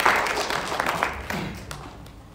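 Audience applauding, the clapping thinning and dying away toward the end.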